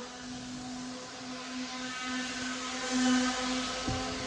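A steady machine hum with a held low tone, swelling slightly about three seconds in.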